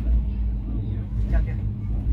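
Passenger train coach running along the track, heard from inside as a steady low rumble, with a person's brief words partway through.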